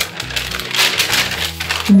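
Thin paper crinkling and rustling as it is folded and handled by hand.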